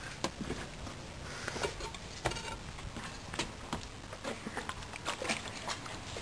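Footsteps on a tiled path with handling noise from a carried camera: light, irregular clicks and knocks over a low rumble.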